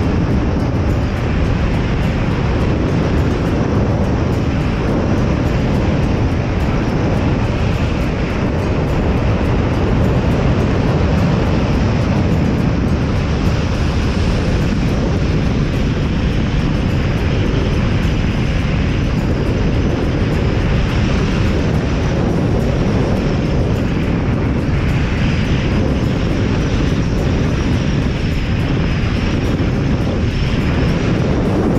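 Steady wind noise on a handcam's microphone during a tandem parachute descent: an even, dense rush, heaviest in the low range, with no break.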